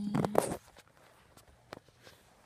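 A brief vocal sound right at the start, then quiet with a few faint sharp clicks and knocks from die-cast toy cars being handled and moved.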